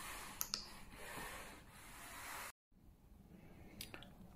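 Faint room noise with a couple of light clicks about half a second in, broken off about two and a half seconds in by a moment of dead silence.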